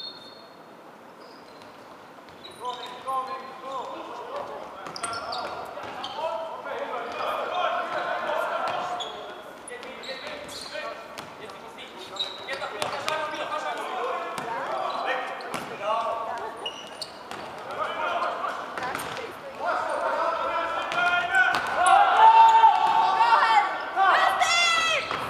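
Voices shouting and talking, echoing in a large sports hall, with scattered knocks of a futsal ball bouncing on the wooden court floor. The voices are loudest near the end.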